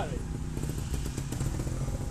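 Trials motorcycle engine idling nearby, a low, steady rumble.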